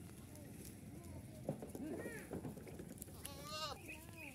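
Goats bleating: a few short calls in the middle, then a longer, quavering bleat near the end.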